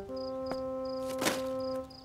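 Crickets chirping in a steady high pulse about three times a second, over a held music chord, with a short swish about a second in.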